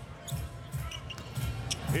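A basketball being dribbled on a hardwood court: a series of dull bounces at a fairly even pace.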